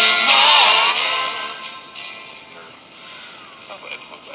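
Music with singing from an AM station received on an MRL No.18 crystal-transistor radio and played through a small speaker amplifier. It fades away about a second in as the tuning dial is turned off the station, leaving faint hiss with a thin whistle that glides in pitch. Fragments of another station's voice come in near the end.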